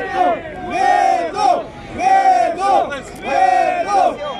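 Crowd of spectators chanting in rhythm, a loud two-part shout about once a second.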